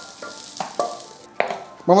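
Hot sautéed ají amarillo, onion and garlic being scraped from a frying pan into a glass blender jar: a faint sizzle of the hot oil, with several short clicks and scrapes of utensil and pan against the jar.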